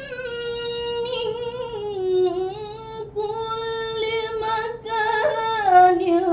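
A teenage girl's voice reciting the Qur'an in melodic tilawah style, in long held notes that bend slowly down and back up. There is a short pause for breath about three seconds in.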